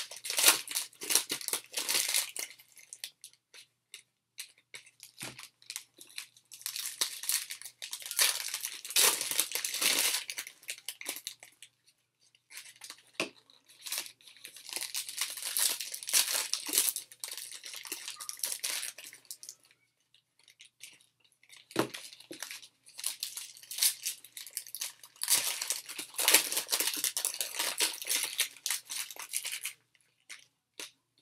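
Foil trading card pack wrappers being torn open and crinkled by hand, in four bouts of crackling with short pauses between, along with the cards inside being handled.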